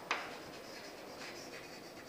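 Chalk writing on a blackboard: a sharp tap of the chalk on the board just after the start, then faint chalk strokes.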